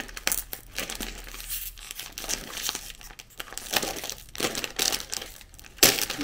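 Plastic snack bag crinkling and rustling in the hands as it is pulled and twisted to get it open, with a sharp, loud burst near the end as the bag gives way and tears open.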